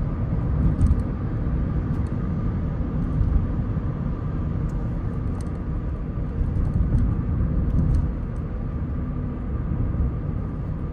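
Cabin noise of a Ford car driving at speed on a main road: a steady low rumble of tyres and engine.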